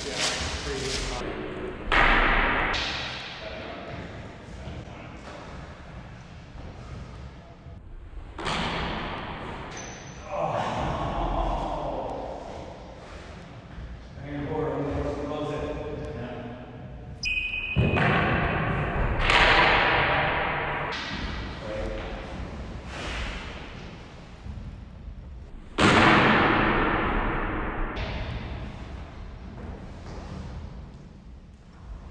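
Longsword sparring: several sharp clashes and thuds of training longswords and stamping footwork on a hardwood floor, each ringing out in a long echo off the court's bare walls. The loudest hits come about two seconds in and near the end.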